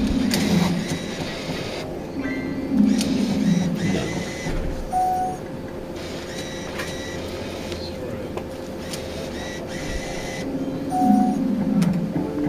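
Gaming machines in a betting shop: a steady electronic tone under the whole stretch, two short bleeps and scattered clicks, and bursts of jingle-like machine sound from the slot terminals.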